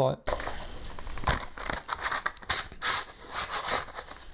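Packaging crinkling and rustling in quick irregular bursts as it is handled, with a cooling fan being taken out of its wrapping.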